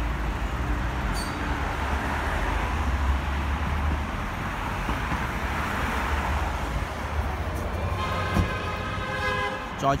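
Busy street traffic: a low engine rumble from passing vehicles for the first few seconds over a steady hiss of road noise. Near the end, a steady pitched tone, like a vehicle horn, sounds for about two seconds.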